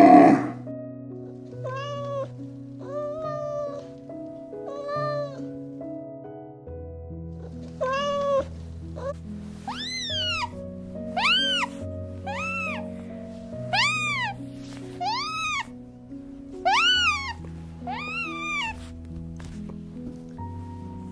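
A series of high-pitched animal calls, each rising and falling in pitch, about one a second through the second half. They are preceded by a few flatter calls and open with one loud call at the very start. Soft background music with sustained chords plays underneath.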